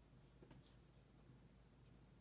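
Dry-erase marker writing on a whiteboard, very quiet, with one brief high squeak about two-thirds of a second in.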